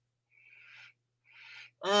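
Two short, faint sniffs through the nose, about a second apart: a person smelling perfume.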